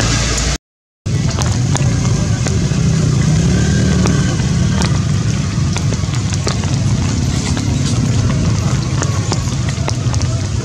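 Steady outdoor background noise: a low rumble with a haze and scattered faint clicks. It cuts out to silence for about half a second near the start, then resumes.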